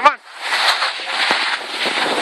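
Steady rushing hiss of skis sliding over groomed snow, with wind on the phone's microphone, while skiing downhill.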